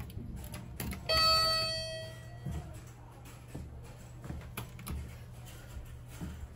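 Elevator arrival chime: a single ding about a second in that rings out and fades over about a second, over a low steady hum. Faint clicks follow as the doors open.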